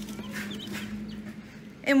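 Newly hatched chicks peeping in a brooder box: a few short, high peeps in the first second, over a low steady hum.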